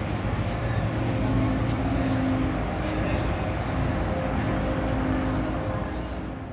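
Outdoor city riverside ambience: a steady low engine hum under a constant wash of background noise, with a few faint clicks.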